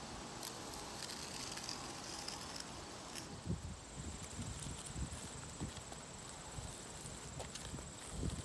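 Quiet scraping of chalk on asphalt as a line is drawn along a guide string, with a few soft low knocks and shuffles partway through.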